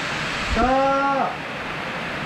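A steady hiss-like noise, with one person's voice holding a single drawn-out word for under a second, about half a second in.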